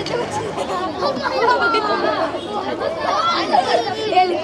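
Many voices chattering at once, several of them high-pitched, as from a group of women and children talking over one another.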